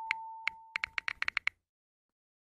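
Text-typing sound effect: a quick run of short, sharp clicks, one per letter as a title types out on screen, speeding up and stopping about a second and a half in. Under the first clicks a faint steady tone fades out.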